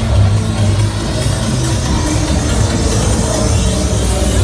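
Loud electronic dance music with a heavy bass, played over club and bar sound systems along the street.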